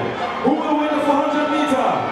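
A raised voice holding one long call, from about half a second in until near the end.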